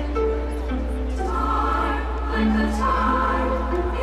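Choir-like singing with music, long held notes slowly changing pitch, played over a stadium PA and picked up from within the crowd.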